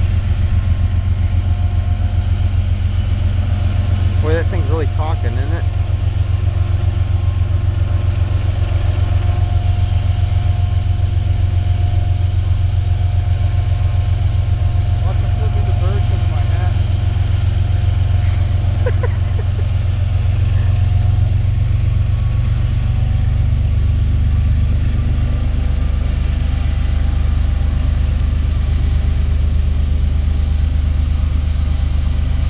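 Diesel locomotives pulling a Union Pacific freight train, a loud steady low engine drone with a pulsing beat. The pitch of the drone drops a little about three-quarters of the way through.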